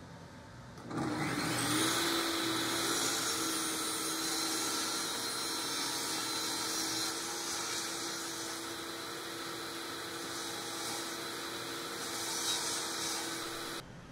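Bosch job-site table saw starting about a second in and running steadily as it trims the wooden jig base to size, with a high motor whine; it stops suddenly near the end.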